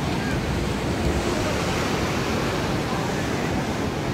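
Sea surf washing and breaking on a rocky shore, a steady rush of water, with wind buffeting the microphone.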